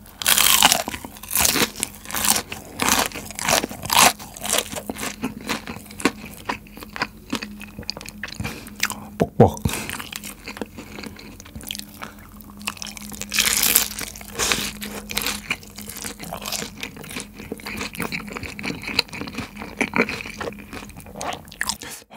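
Close-miked crunching and chewing of crispy boneless fried chicken: loud crunches for the first few seconds, then softer chewing. A second burst of crunching comes about halfway through, as a piece of sauced fried chicken is bitten.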